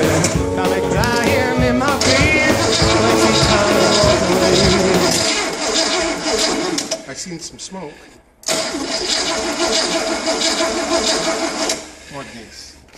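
A rock-and-roll song plays for about the first five seconds. Then a V8 engine on a run stand is cranked over by its starter without catching, with a brief stop about eight seconds in before the cranking resumes.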